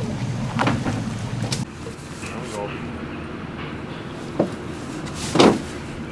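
A boat's engine idling, with a couple of knocks as someone steps aboard the hull. About a second and a half in, the engine hum drops away. Near the end there is a brief vocal exclamation.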